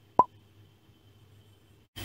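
A single short pop sound effect that glides quickly upward in pitch, about a fifth of a second in, with a faint steady hum otherwise.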